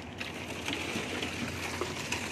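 Electric concrete needle vibrator running in wet concrete: a steady low hum under an even wash of noise.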